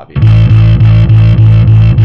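Fender Precision electric bass playing a steady run of repeated eighth notes on A, about four a second.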